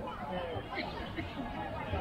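Indistinct chatter of several people talking nearby, with no words clear.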